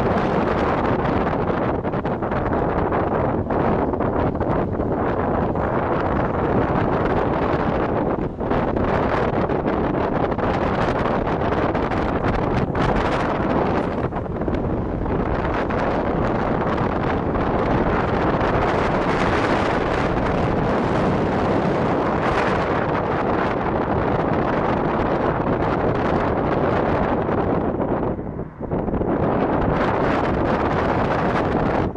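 Wind rushing over the microphone from a moving car, mixed with road and engine noise: a steady, loud rush that drops briefly near the end.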